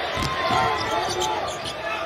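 A basketball being dribbled on a hardwood court, several bounces in a row, over the background noise of an arena during play.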